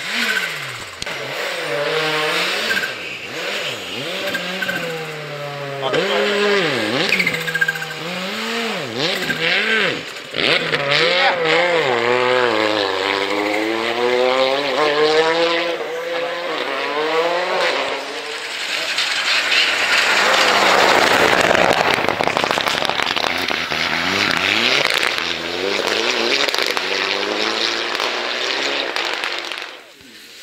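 Rally car engine revved up and down again and again, its pitch rising and falling in repeated bursts, as the car works to drive out after sliding off the snowy stage into the trees. A louder rushing noise swells for several seconds past the middle.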